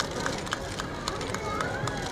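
Murmur of a gathered crowd with scattered voices and irregular sharp clicks, several a second.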